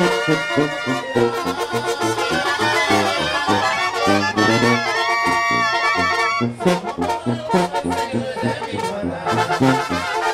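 Brass band music with trumpets and trombones playing over a steady pulsing low beat, with a few long wavering held notes about five seconds in.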